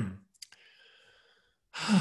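A man's short, thoughtful "mm" hum, then a small mouth click and a soft breath as he gathers his thoughts. Speech begins near the end.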